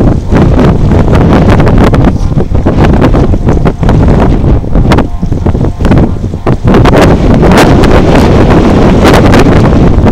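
Wind buffeting the camera microphone: a loud, gusty low rumble with uneven surges and brief dips.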